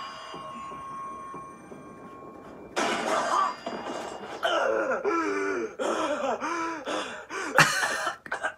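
Anime soundtrack audio: for the first couple of seconds, a ringing sound effect made of several steady high tones. Then comes a voice in short, repeated phrases that rise and fall in pitch, with a sharp knock near the end.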